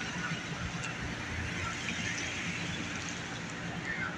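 Steady city traffic noise, a constant street rumble with a few faint short chirps above it.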